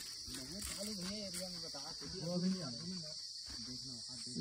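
Steady high-pitched insect chorus, with faint low voices of men murmuring in the first three seconds.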